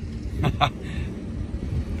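Wind buffeting the microphone as a steady low rumble, with two short sharp clicks about half a second in.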